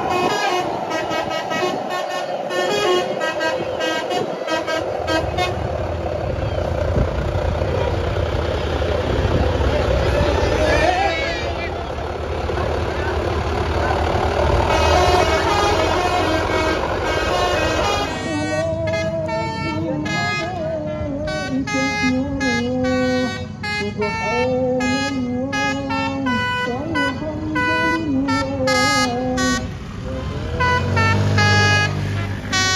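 Bus "telolet" horns, the multi-tone musical air horns of Indonesian tour buses, playing fast tunes of short notes again and again. A bus's diesel engine runs close by under the horns in the middle stretch, then drops away at about 18 s, leaving choppier, quicker horn sequences.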